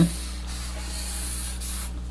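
Red felt-tip marker drawn across paper, a soft scratchy hiss lasting about a second and a half as it traces a box around an equation.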